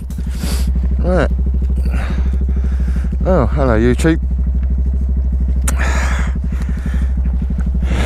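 Honda Grom motorcycle's small single-cylinder engine running steadily while the bike is ridden, heard from a helmet-mounted camera.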